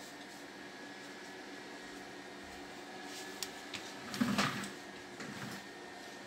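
Quiet room tone with a steady faint hum and a thin high tone, broken by a few light clicks and a short louder noise about four seconds in, from the phone being handled as it moves around an idle sewing machine.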